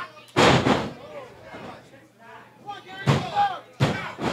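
A wrestler's body crashing onto the canvas of a wrestling ring on a slam, one loud hit about a third of a second in that rings on briefly. Near the end come two sharper slaps of the referee's hand on the mat, counting the pin to two.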